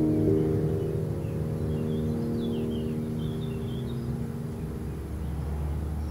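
Piano music, muffled as if playing in another room, its last held chord ringing and slowly fading away. A few faint bird chirps come in the middle, and a low rumble of street traffic rises near the end.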